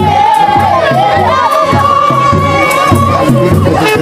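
Gumuz traditional dance music: a group singing and chanting over a steady beat on a large drum, with one high note held long above them, wavering at first and then steady.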